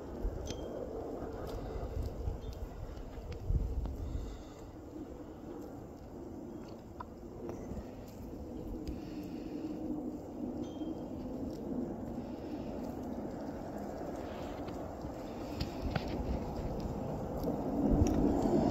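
Low, steady outdoor rumble of a snowy night, swelling a little a few seconds in, with a few faint clicks.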